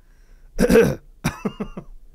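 A person coughs loudly once, then makes a shorter throaty sound. It comes from a recorded soundbite of a past episode, played back.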